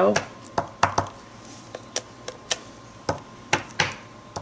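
Rubber stamp tapped and pressed on an ink pad to ink it: about ten light, sharp taps at uneven spacing.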